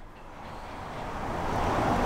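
Road noise from a passing vehicle, a steady hiss with no distinct engine note that grows louder through the two seconds as the vehicle approaches.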